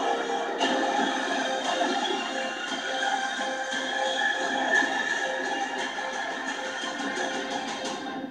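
Trailer music with held notes, played back through a speaker in the room, fading out near the end.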